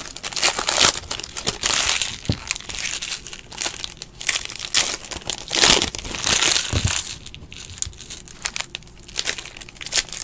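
Foil wrapper of a Panini Prizm football card pack crinkling and tearing as it is ripped open and handled, in irregular crackly bursts.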